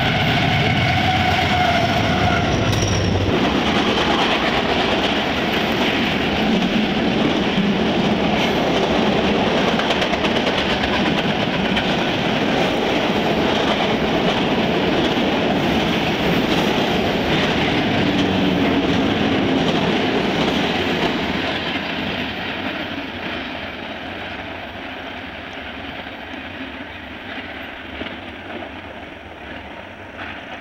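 Canadian Pacific diesel freight train passing close by. Its lead locomotives rumble past in the first three seconds, then the intermodal cars roll by with wheels clicking over the rail joints. The noise fades gradually from about two-thirds of the way through as the train moves away.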